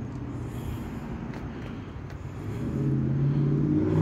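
A motor vehicle's engine running with a low steady hum, growing louder over the last second and a half.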